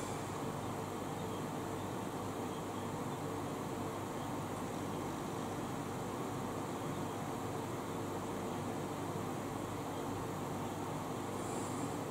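Electric fan running: a steady even rush of air with a faint hum.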